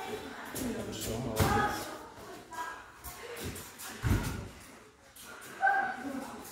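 Mostly a man's voice calling out a word of praise, with shuffling footsteps on the ring canvas and scattered light knocks; a dull thud about four seconds in is the loudest sound.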